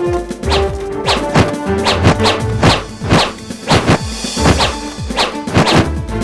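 A quick run of punch and strike sound effects from a hand-to-hand fight, a hit roughly every half second, over background music.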